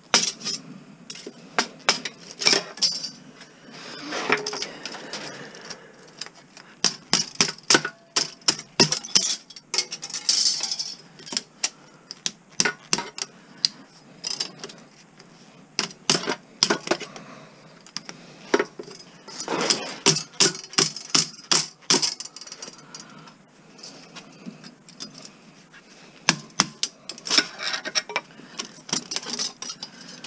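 Hammer beating on a chisel against the copper windings of a small transformer core, metal on metal, in irregular runs of quick strikes with short pauses between. The chisel is cutting through the wire rather than driving the coil off the core.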